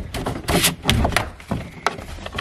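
A Jeep's hard plastic interior trim piece being yanked and wrenched against its mounting clips: a series of short knocks and scraping creaks of plastic on the body.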